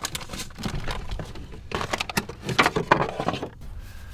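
Rummaging in a crammed cabinet: a run of irregular knocks, clatters and rustles as packed items shift and an electric blender is pulled out.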